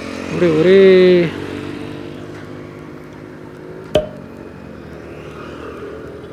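Riding noise from a Yamaha R15's single-cylinder engine running steadily under way. A drawn-out voice call comes about half a second in, and a sharp click about four seconds in.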